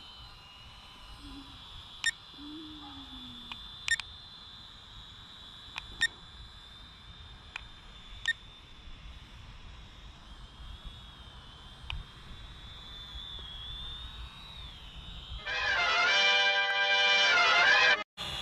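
Small quadcopter drone's propellers whining steadily at a high pitch, with a few faint ticks about every two seconds. Near the end, a loud burst of music with several held tones lasts about two and a half seconds.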